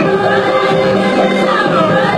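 Music with a group of voices singing held notes, the melody sliding up and down.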